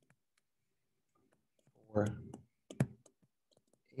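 A few sharp clicks of a stylus tapping on a tablet screen during handwriting, mostly in the second half, with one spoken word about two seconds in.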